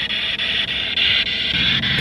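Handheld ghost-hunting radio sweep device (spirit box) scanning through radio stations: a steady, choppy hiss of static broken into rapid short fragments as it skips from station to station.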